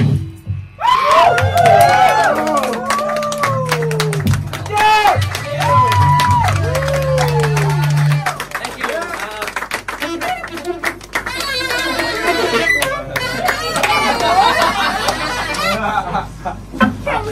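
Rock band's jam cuts off and the audience claps and whoops, with many short claps and rising-and-falling cheering voices. A low held tone from the amps rings underneath for the first half and dies out about halfway through.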